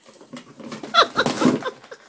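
English springer spaniel ripping and chewing at a cardboard box, with repeated crackling tears of cardboard. There is a brief high-pitched vocal sound about a second in, at the loudest moment.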